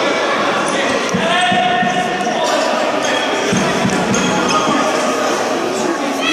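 Futsal play in a sports hall: the ball thudding as it is kicked and bounces on the wooden court, among shouts from players and spectators.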